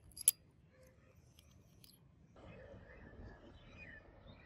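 A sharp metallic click near the start, followed by a few faint ticks, as the parts of a handmade steel-and-brass pocket lighter are handled. After about two and a half seconds steady outdoor background noise takes over.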